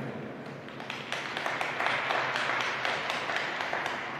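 Scattered applause from a small audience, individual claps distinct, building about a second in and thinning out near the end.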